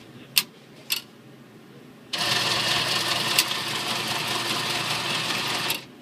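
Two sharp clicks, then a Cardtronics ATM's internal mechanism running with a steady mechanical whir for about four seconds, stopping abruptly.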